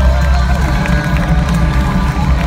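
Loud live concert sound heard from within the audience: a bass-heavy beat with live drums, the low end distorting, and the crowd cheering.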